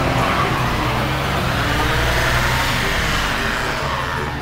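Car sound effect: a motor vehicle driving past, its engine and road noise rising in pitch toward the middle and falling away near the end.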